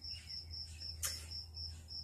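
Cricket chirping steadily, about four or five short high chirps a second, over a faint low hum.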